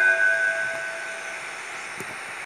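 A held electronic chord, the closing note of a radio station jingle, fading away. Its tones die out about a second and a half in, leaving faint hiss.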